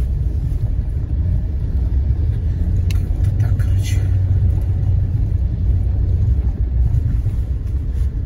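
Car driving along a rutted dirt track, heard from inside the cabin: a steady low rumble of engine and tyres, with a few short knocks and rattles from bumps about halfway through.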